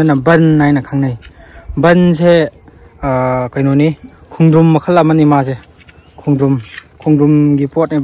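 A man talking in short phrases over a steady high-pitched insect trill that runs unbroken underneath.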